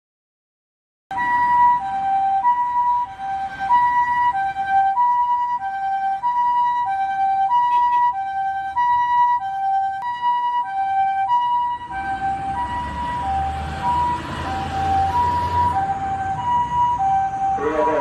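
Japanese ambulance siren sounding its two-tone hi-lo "pee-po" call, a higher and a lower tone alternating evenly about every two-thirds of a second, starting about a second in. From about two-thirds of the way through, a low rumble of motor traffic runs under it.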